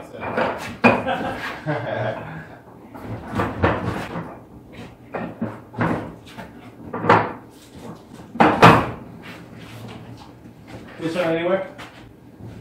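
Irregular knocks and bangs, a few of them sharp and loud, as a washing machine and boxed appliances are handled and moved.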